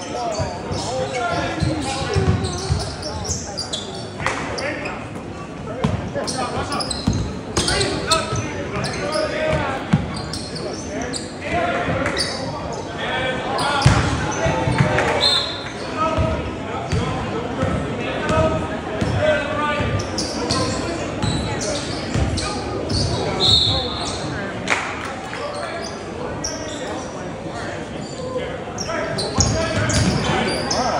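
Basketball dribbling on a hardwood gym floor, with the voices and shouts of players and spectators echoing in the gym. There are brief high sneaker squeaks a few times.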